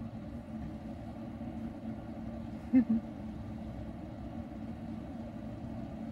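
Steady low hum of a vehicle engine idling nearby. A single short, louder sound comes about three seconds in.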